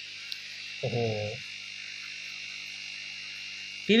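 Steady electric hum with a constant hiss from running aquarium pumps and aeration.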